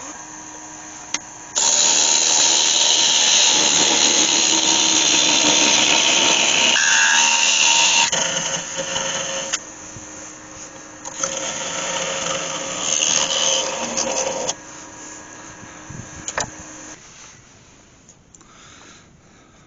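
Wood lathe running with a steady hum while a turning tool cuts into the spinning yew workpiece near the chuck, parting part of it off. There are two long loud scraping cuts, the first starting a second or two in and the second in the latter half, and the lathe stops near the end.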